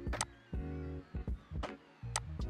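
Computer mouse and keyboard clicks, a handful spread across the two seconds, over a steady low electrical hum that cuts in and out.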